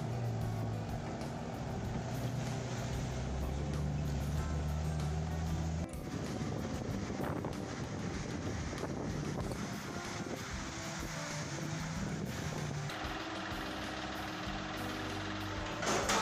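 Lada Niva's engine running as the vehicle drives through a flooded dirt road, steady for the first six seconds. After a cut about six seconds in, water and mud splash under the wheels.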